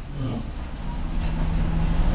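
Steady low rumble of a motor vehicle, slowly growing louder, with a faint low hum.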